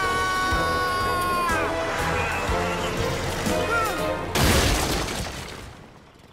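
A cartoon crash effect of a heavy concrete section falling and smashing to the ground about four and a half seconds in. It is the loudest sound and dies away within about a second. Before it comes dramatic music with a long held note.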